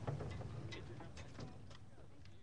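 Faint, scattered light clicks and knocks of pit percussion equipment being handled, over a low background rumble of outdoor ambience, fading out near the end.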